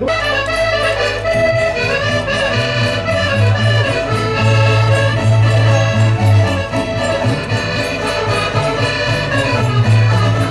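Portuguese folk-dance band (rancho folclórico) playing traditional Minho dance music led by an accordion, holding steady sustained chords; the music strikes up suddenly at the start.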